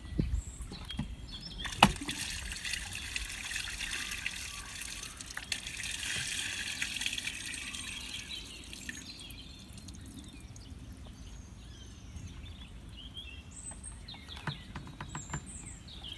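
Waste pouring from a cassette toilet's swivel spout into a dump-station drain, with the air-release button pressed so the contents run out. The flow is strongest for the first several seconds, then thins to a trickle as the tank empties. A single sharp click sounds just under two seconds in.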